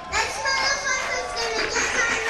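Large festival crowd cheering and screaming, many high voices overlapping, rising sharply in level just after the start.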